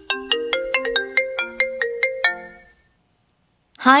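A short electronic chime jingle: about a dozen quick, bell-like notes in a little melody, four or five a second, dying away about three seconds in. It is the cue that opens the next recorded test dialogue.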